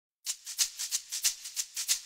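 Intro music opening with a shaker playing alone: a quick, even rhythm of about six strokes a second, starting a moment in.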